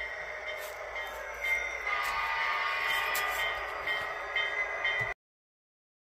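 Model train running on a layout: a steady whine with a thin high tone and a few faint clicks, growing louder about one and a half seconds in. The sound stops abruptly about five seconds in.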